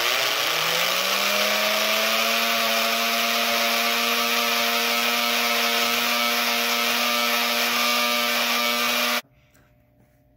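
The open-frame electric motor under a Lionel No. 97 coal elevator, which drives the conveyor through a worm gear, is switched on. Its whine rises as it spins up over about a second and a half, then it runs loudly at a steady pitch, and it cuts off suddenly about nine seconds in.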